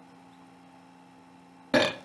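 A single short, loud burp blown through a clarinet near the end, after a quiet stretch.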